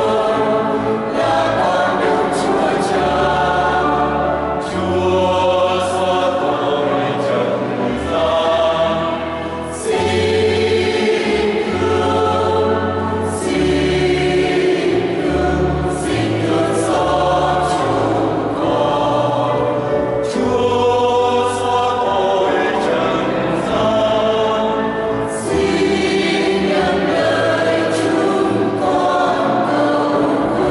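Mixed choir of women's and men's voices singing a Vietnamese Catholic hymn in phrases, over held bass notes that change every second or two.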